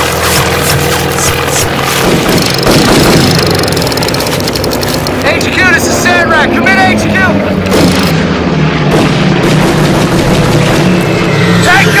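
Dubbed battle soundtrack: a steady low rumble with war sound effects and music, with men shouting about halfway through and again near the end.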